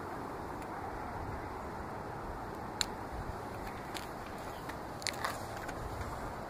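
A painting soaked in accelerant burning on concrete, the flames giving a steady rushing hiss with a few sharp crackles.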